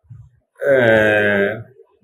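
A man's voice holds one level, drawn-out vowel sound for about a second between his spoken words.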